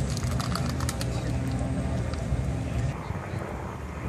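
Indistinct voices of people milling about, with a steady low rumble underneath and a few faint clicks in the first second.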